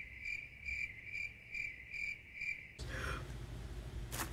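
Cricket chirping, edited in as a comedy "crickets" sound effect: an even, high chirp pulsing about three times a second that cuts off abruptly about three quarters of the way through, leaving a low room hum.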